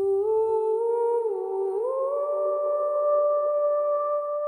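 Channel logo jingle: a single sustained, humming tone that wavers and climbs in pitch in small steps over about two seconds, then holds steady.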